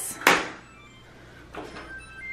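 A short soft knock or rustle, then a few faint, brief electronic beeps from the control panels of a front-load washer and dryer, over a low steady hum.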